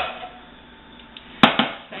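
A wooden spoon knocks against a nonstick frying pan with a brief ring as ground meat is scraped into a casserole dish. About a second and a half in the pan is set down with a louder knock and a smaller one just after.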